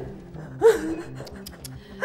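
A short, loud gasp about half a second in, its pitch rising then falling, over background music with steady low notes.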